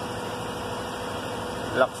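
A steady mechanical hum with a faint constant tone, with no clicks or knocks, and a short spoken word near the end.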